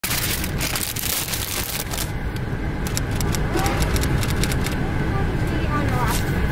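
A car's engine running, heard from inside the cabin as a steady low rumble, with a burst of clicks and crackles over the first two seconds and scattered clicks after. A faint voice comes in during the second half.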